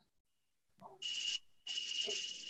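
Faint insect chorus, a steady high buzz with one shrill tone, heard through a video call's audio. It comes in two short stretches that cut in and out abruptly.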